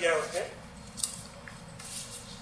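A man's voice finishes a word, then two brief, faint rustles follow, about a second in and near the end, as papers are handled at a desk.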